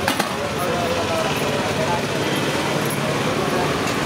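People talking indistinctly over a steady background of road traffic, with a single short clink just at the start.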